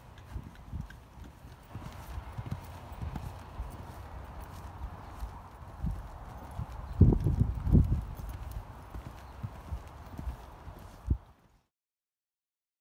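A horse's hooves striking the ground in an uneven run of thuds, loudest in a cluster just past the middle; the sound cuts off abruptly shortly before the end.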